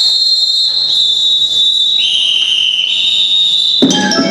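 High, steady held tones from a percussion ensemble's opening, stepping down in pitch over about four seconds as each new note overlaps the last. Struck mallet-keyboard notes with lower sounds come in suddenly near the end.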